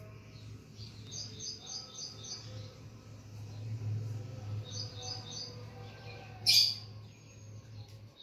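Small bird chirping in quick runs of short high notes, two runs a few seconds apart, over a steady low hum. About six and a half seconds in comes a brief, louder scratchy burst.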